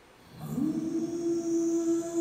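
A male voice singing, largely unaccompanied: after a brief hush it slides up into a note about half a second in and holds it steadily.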